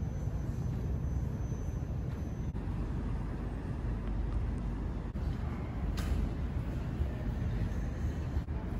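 Steady low rumble of background noise, broken by abrupt changes where clips are cut together, with a single short click about six seconds in.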